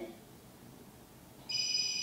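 Cell phone ringing: after a short quiet gap, a ring burst of several steady high electronic tones sounds together, starting about one and a half seconds in.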